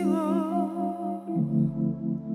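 Live band performance: a woman sings one long held note with vibrato over sustained chords from the band, and the chord underneath changes about one and a half seconds in.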